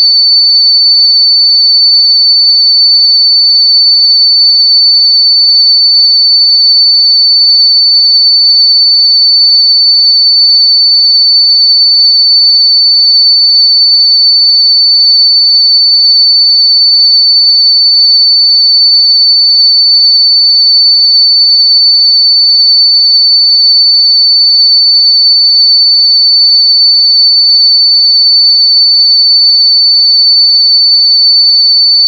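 A steady, loud, high-pitched pure sine tone at 4509 Hz, held unchanged.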